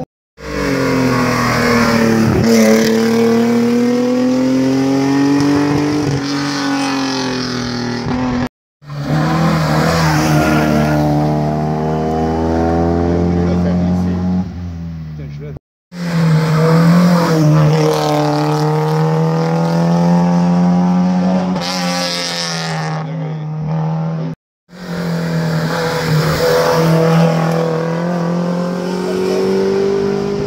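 Historic rally cars climbing a hillclimb course one at a time, each engine revving hard as it approaches and passes, its pitch rising and dropping again at each gear change. The sound breaks off suddenly three times between cars.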